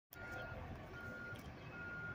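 Backup alarm on construction equipment beeping faintly: three short beeps at one steady pitch, evenly spaced, with a low background hum.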